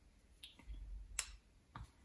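Faint clicks and a light knock of steel rotary-table parts handled by hand, with one sharper click about a second in.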